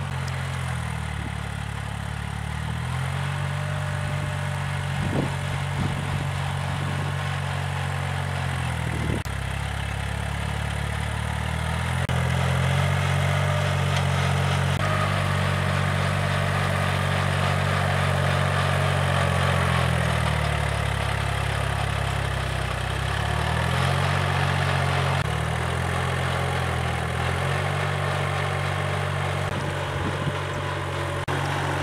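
Kubota L3608 tractor's diesel engine running under load while pulling a rotary tiller through soil, its note shifting down and up in pitch several times as the load changes, a little louder through the middle.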